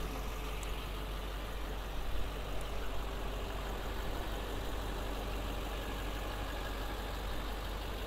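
6.6-litre Duramax LMM V8 diesel idling steadily.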